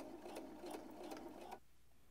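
Sewing machine running faintly as it edge-stitches along boning casing; the sound stops about one and a half seconds in.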